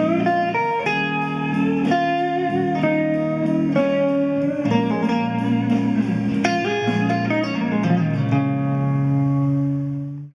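Guitar playing a jazzy minor blues solo line in B-flat minor over a backing band, with a steady cymbal tick keeping time. Near the end the band stops and a final chord is held and rings out.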